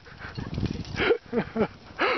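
A person laughing in short bursts, over a low rumble in the first second.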